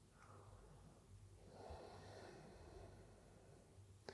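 Near silence: room tone, with one faint breath about halfway through, from a man holding a calf stretch.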